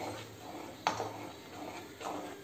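Wooden spoon stirring thin gram-flour and curd batter in a steel kadai: quiet, soft stirring with one sharp tap of the spoon against the pan a little under a second in.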